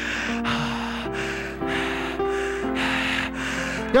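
Keyboard playing slow, sustained chords that change every half second to a second, with heavy breathing into a close microphone that swells and fades about twice a second.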